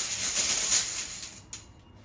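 Small plastic numbered draw tokens rattling and clattering together as they are mixed by hand before one is picked out; the dense rattle dies away about a second and a half in.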